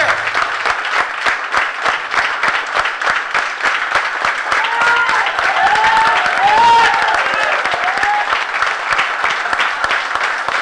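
A seated audience applauding, many hands clapping together, with a voice calling out over the clapping for a few seconds midway.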